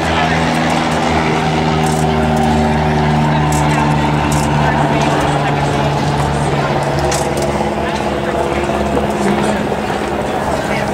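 Steady drone of a running engine, holding several fixed low tones, with one of them fading out about three-quarters of the way through. Indistinct voices chatter underneath.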